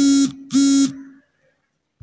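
Two short, loud electronic buzzes in quick succession, each on one flat pitch and ending abruptly, with a fainter tail of the same tone after the second.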